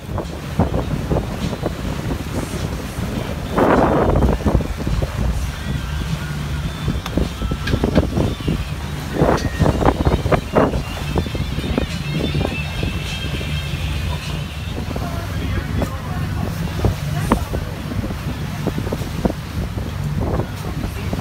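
Tour boat's engine running steadily while under way, with wind on the microphone and a loud rush of wind or water about four seconds in.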